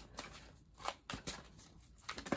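A deck of tarot cards being shuffled by hand, heard as a few faint, short card flicks and rustles.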